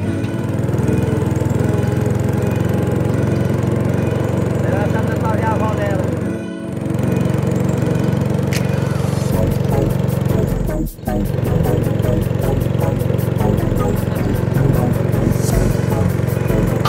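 Steady drone of a boat's motor under background music.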